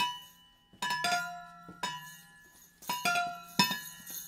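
Steel thermoses struck together as a percussion instrument: about five strikes, roughly one a second, each ringing with a clear bell-like pitch that fades away, over a low steady hum.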